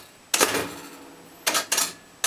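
Pinball drop targets pushed down by hand, each snapping down into the seven-target bank with a sharp click and a brief metallic ring: one about a third of a second in, then two close together near the end.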